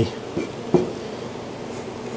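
Fingertip pressing and rubbing wood putty into brad holes in the wood trim of a plywood box, with two light taps a little before and after half a second in, over a steady background hiss.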